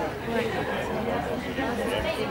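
Indistinct chatter of voices talking, with no other sound standing out.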